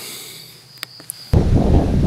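Crickets singing, a faint steady high tone, with a couple of small clicks; about a second and a half in it cuts off suddenly to wind buffeting the microphone with a low rumble.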